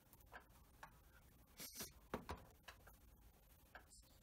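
Near silence: room tone with a handful of faint, short clicks spaced irregularly.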